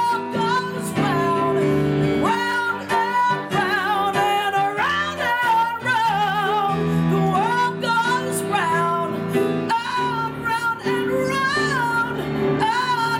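A woman singing held, belted notes with wide vibrato, sliding between pitches, over grand-piano accompaniment.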